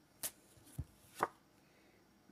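Oracle cards being handled as a card is drawn from the deck: three short, quiet taps about half a second apart, the middle one a soft low thump.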